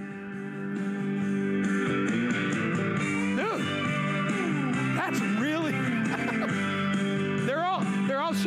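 Music with guitar playing from an ION Audio Water-Resistant Party Float Boombox, a Bluetooth speaker, turned up louder in the first second and then playing steadily at high volume.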